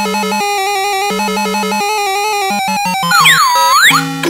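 Playskool Busy Ball Popper's sound chip playing a simple electronic tune in beeping tones. Near the end a loud swooping sound effect dips in pitch and rises again.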